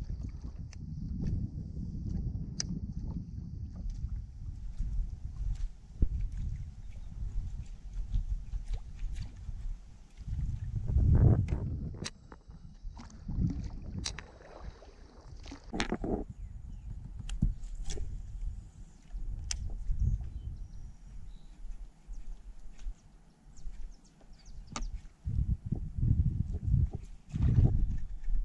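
A plastic sit-on-top kayak being paddled: the paddle blade dipping and pulling through the water, with scattered clicks and knocks and an uneven low rumble underneath, loudest about a third of the way in.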